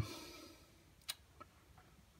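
Quiet room tone with a faint hiss fading out at the start, and one short sharp click about a second in, followed by a softer tick.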